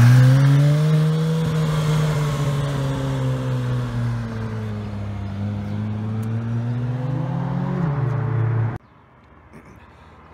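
A car engine rising in revs as it pulls away, then running fairly steadily at moderate revs with a small blip, before cutting off suddenly about nine seconds in.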